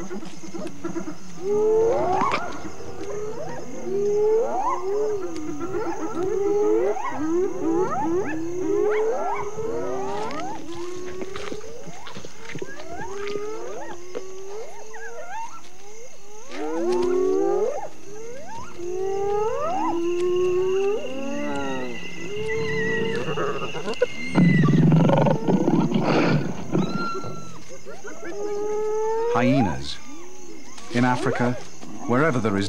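Several spotted hyenas calling at night: overlapping rising whoops, one after another every second or so. A fast run of giggling cackles comes a little past the middle, and a louder, lower growling burst comes near the end.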